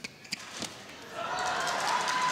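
A few sharp knocks as a badminton rally ends: racket on shuttlecock and players' feet on the court. From about a second in, arena crowd applause and cheering swells up.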